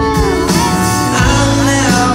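Live country band playing an instrumental passage heard from the crowd: acoustic guitar, electric guitar and drums under sustained, sliding steel guitar lead notes.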